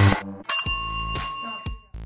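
Background electronic dance music drops away about a quarter second in, then a single bell-like ding rings for about a second over a faint, regular beat and cuts off just before the end.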